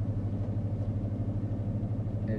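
Steady low engine hum and rumble of a pickup truck, heard from inside its cab.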